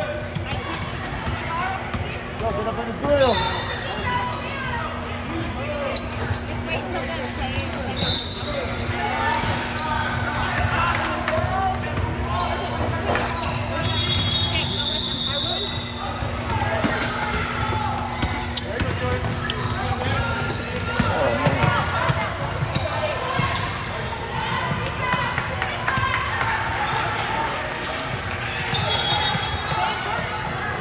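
A basketball dribbling and bouncing on a hardwood gym floor during play, with indistinct voices echoing in a large hall. A steady low hum runs underneath, and several short high squeaks come and go.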